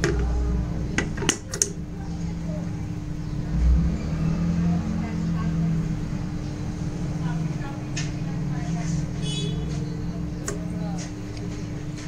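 Steady electrical hum from a mains-powered circuit board with its transformers and fluorescent-lamp choke, broken by a few sharp clicks: the power switch being turned on about a second in, and later relays clicking as the microcontroller switches power-factor correction capacitors in and out.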